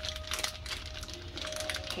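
Plastic Ziploc bag crinkling and rustling in the hands in quick, irregular little clicks as it is squeezed and its clogged piping tip is worked at. A faint steady tone runs underneath.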